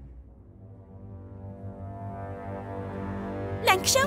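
Drama background score: a sustained low droning chord that swells gradually louder. A woman's voice breaks in near the end.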